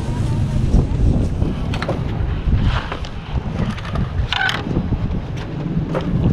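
Wind buffeting the microphone, a steady low rumble, with faint voices in the background.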